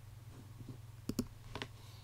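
A few sharp clicks at a computer: two quick ones a little over a second in, then a third about half a second later, over a low steady hum.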